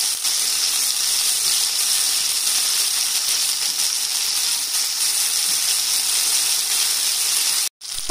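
Paneer tikka skewers sizzling in oil on a tawa, a steady hiss. It breaks off for a moment near the end.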